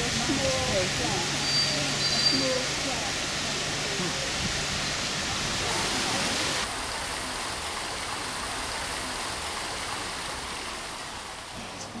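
Water from a square's fountain jets splashing steadily, with faint voices over it in the first few seconds.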